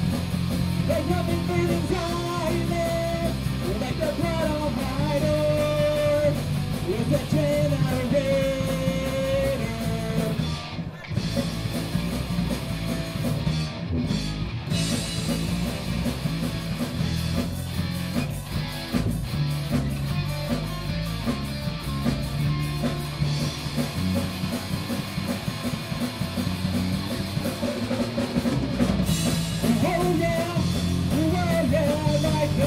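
Live rock band playing loudly: electric guitars over a drum kit, with a brief dip in the sound about eleven seconds in.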